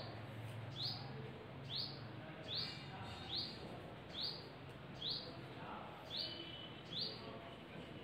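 A bird calling over and over in the background: a short, high chirp that drops in pitch, repeated evenly about ten times, a little more than once a second.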